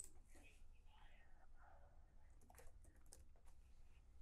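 Faint typing on a computer keyboard, a short run of separate keystroke clicks.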